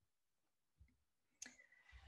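Near silence: quiet room tone with one faint, short click about three-quarters of the way through.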